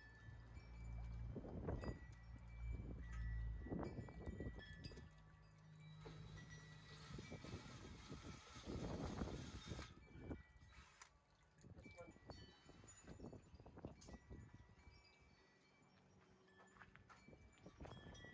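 Wind buffeting the microphone, then a cordless drill runs for about four seconds, starting and stopping sharply, as a metal bracket is fastened overhead. Birds chirp in the background.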